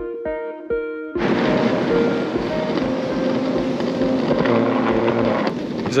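Background music, piano notes over a steady beat, cut off about a second in by loud steady street noise with traffic, as from a handheld camera outdoors.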